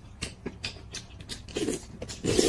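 Close-miked eating: a string of small wet chewing clicks and soft noodle slurps as hand-peeled bamboo shoot and buckwheat noodles are eaten.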